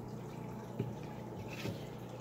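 Aquarium aeration bubbling quietly, with a steady low hum and a couple of faint ticks.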